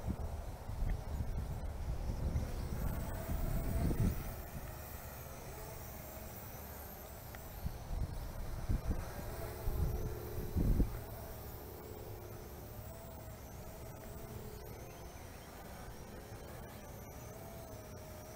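Faint, wavering whine of the Eachine E33 toy quadcopter's motors and propellers flying overhead, with wind buffeting the microphone, heaviest in the first four seconds and again about eight to eleven seconds in.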